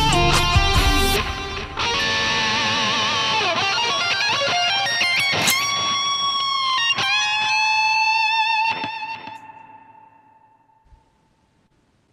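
Electric guitar played solo: a fast run of lead notes, then long held high notes that ring on and fade away to silence near the end.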